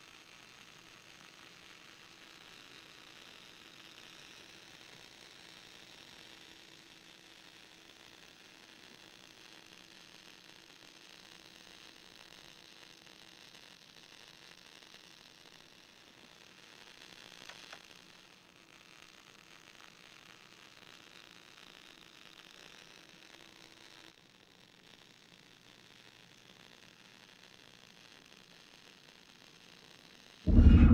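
Near silence: a faint steady hiss with a faint low hum that stops about 24 seconds in.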